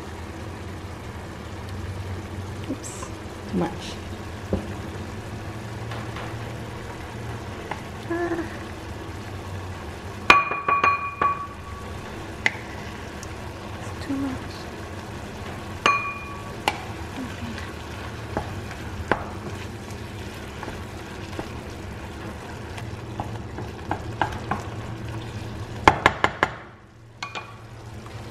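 Sliced mushrooms, green pepper and onion sizzling in a frying pan while a wooden spatula stirs them, with a few sharp knocks of the spatula against the pan, some ringing briefly.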